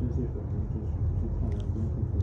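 A low, irregular rumble, with faint voices underneath.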